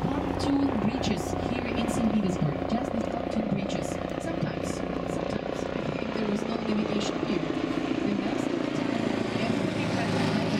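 A helicopter flying overhead, heard over the steady drone of the tour boat's engine.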